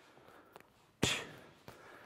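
A single gloved punch smacking into a focus mitt about a second in, a sharp slap followed by a short hissing exhale from the puncher.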